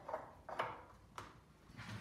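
A few light clicks and knocks, three or so, as a CNC-carved wooden wheel is turned by hand on its axle and stand.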